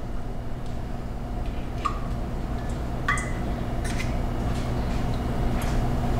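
A few faint clicks and taps of eggshell against a stainless steel mixing bowl as eggs are separated by hand, two of them with a brief ring, over a steady low hum.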